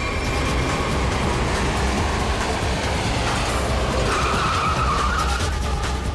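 A car drives up with its engine running and tyres sounding on the road. It brakes hard to a stop with a tyre squeal about four seconds in.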